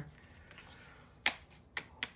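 Two sharp clicks about half a second apart, the first louder: cards being handled and set down on the table.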